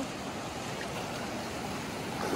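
Steady rush of a shallow mountain river running fast over rocks.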